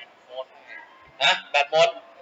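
Speech only: a man's short spoken exclamation in Thai about a second in, over quiet room noise.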